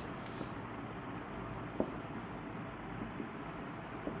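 Marker pen writing on a whiteboard in short scratchy strokes, with one sharp tap just under two seconds in.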